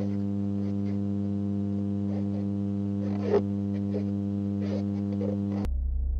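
A steady low drone with a stack of overtones, with a few faint crackles over it. Near the end it switches abruptly to a deeper drone.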